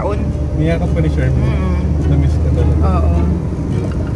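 Steady low rumble of a car's interior while driving, with soft, indistinct talking over it; the rumble eases slightly past three seconds in.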